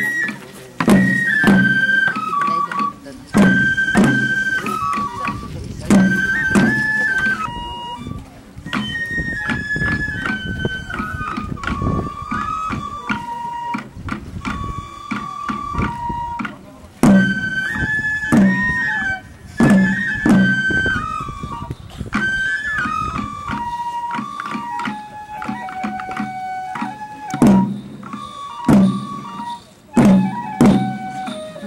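A Japanese bamboo flute plays a melody that steps mostly downward, over beats on the lion dancers' small waist-worn taiko drums, struck at uneven intervals, often in pairs.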